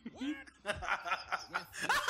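A man laughing, a run of short chuckles that builds toward the end.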